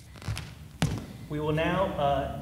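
A sharp knock just under a second in, after a couple of fainter knocks, then a man's voice begins about halfway through in a large studio room.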